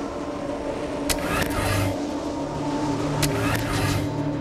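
Dust-storm wind effects: two sudden whooshing gusts, about one second and three seconds in, over a low steady drone.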